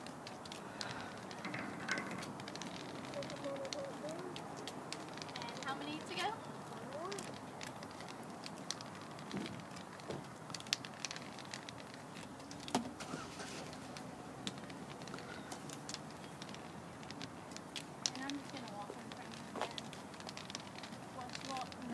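Footsteps and light irregular clicks and taps on asphalt pavement as two people walk, with faint voices in the background.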